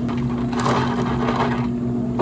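Ice cubes shifting and crackling in clear plastic cups, with liquid being poured over the ice, over a steady low machine hum.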